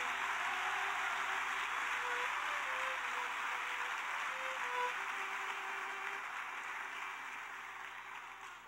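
A congregation applauding, slowly dying away, with a violin holding a few soft sustained notes underneath.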